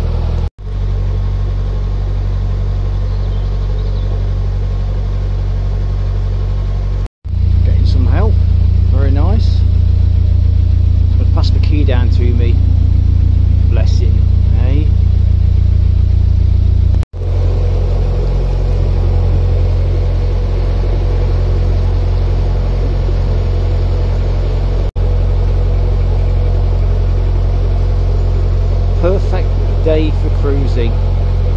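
Narrowboat's diesel engine running steadily with a deep hum. The sound cuts out abruptly three times, and the engine level shifts at each break; it is loudest through the middle third.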